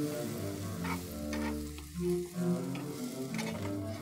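Butter sizzling and foaming in a nonstick frying pan under a grilled cheese sandwich as it is slid around the pan. Soft background music with held notes plays underneath.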